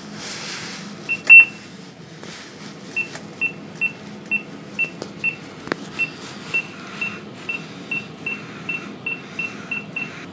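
Lift car-panel push buttons beeping: one loud beep a little over a second in, then a run of short, high beeps about two a second as the buttons are pressed over and over, getting a little quicker toward the end. A single sharp click comes about halfway through.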